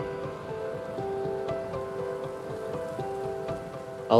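Background music: long held notes that shift in pitch every second or so, over a restless low texture.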